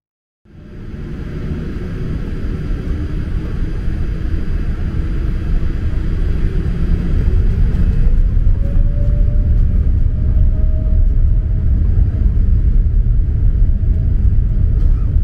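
Boeing 787-8's GEnx engines heard from inside the cabin, spooling up for the takeoff roll: a loud low rumble that builds over the first few seconds, with a whine that rises in pitch a few seconds past the middle and then holds steady.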